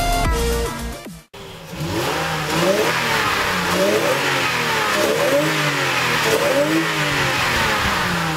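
Electronic music cuts off about a second in. A Lexus IS300's 2JZ-GE inline-six then revs repeatedly, its pitch rising and falling several times.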